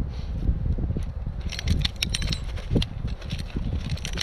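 A steel foothold trap and its chain clinking and rattling as they are handled, starting about a second and a half in, over a steady low rumble.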